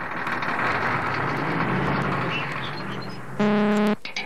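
Cartoon sound effect of a vehicle engine running steadily, then a single short, loud horn honk near the end.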